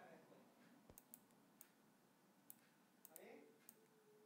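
Several faint, irregularly spaced computer mouse clicks over near-silent room tone.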